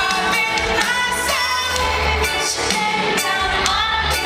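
Live pop-rock band performance recorded from the audience in a large theatre: singing over electric guitar and a drum kit.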